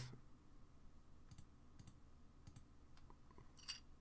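Near silence with five or so faint, short clicks at uneven intervals; the last one, shortly before the end, is the loudest.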